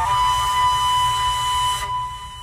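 Background music: a flute holding one long, steady note over a low drone, fading near the end.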